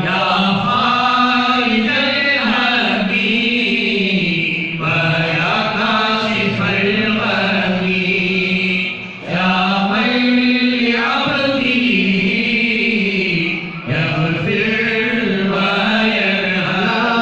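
Men's voices chanting a Sufi devotional rathib (dhikr) in long, steadily pitched phrases, with brief breaks about nine and fourteen seconds in.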